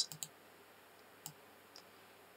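Computer mouse buttons clicking faintly while a face of a 3D model is selected and dragged: a quick pair of clicks at the start, then two single clicks, one a little past a second in and one near the end.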